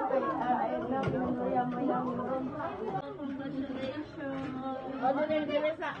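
Several people chatting at once, voices overlapping into background chatter.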